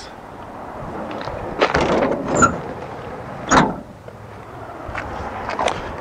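A school bus's metal wheelchair-lift side door being swung shut: a rattle around two seconds in, then a louder thump about three and a half seconds in.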